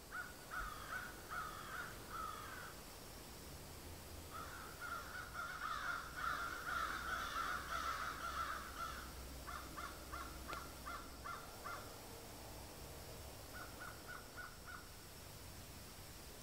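Crows calling in woodland. Scattered calls at first, then several birds calling over one another for a few seconds, followed by two quick runs of short, evenly spaced calls near the middle and near the end.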